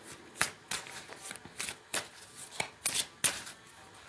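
A deck of tarot cards being shuffled in the hands: a run of short, irregularly spaced card flicks and snaps.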